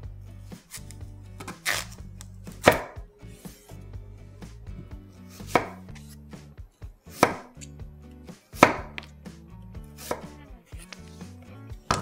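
Chef's knife slicing through Korean radish and striking a wooden cutting board: about seven separate cuts, one to two seconds apart.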